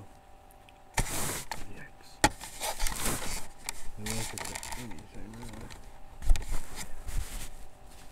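Rustling and handling noises with two sharp clicks. A man's voice murmurs briefly about four seconds in.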